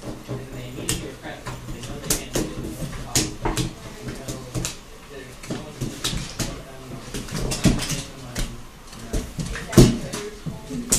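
Playing cards being slapped and flicked down onto a wooden table in quick, irregular snaps during a fast card game, with a louder slap near the end.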